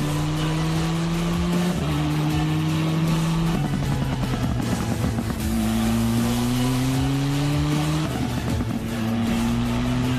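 Open-wheel race car engine accelerating hard, its pitch climbing through each gear and dropping at each upshift, about every two seconds.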